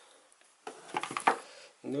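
Handling clatter of a laptop power adapter and its cable being picked up and set down on a table: a short run of clicks and knocks about a second in, then a man's voice starts right at the end.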